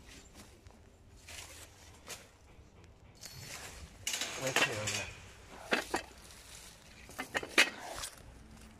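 Rustling and handling noise from a phone being held with a finger against it, loudest about three to five seconds in, with a few sharp knocks near the end.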